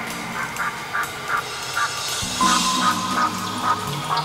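Live band playing an instrumental intro. Sustained low chords run under a repeating pattern of short, higher notes, and the chord changes about two seconds in.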